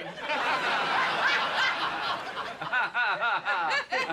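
Sitcom studio audience laughing at a joke, a dense wash of many laughs. In the second half one person's rhythmic 'ha ha ha' laugh stands out over it.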